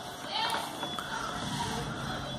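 Faint background voices over low room noise.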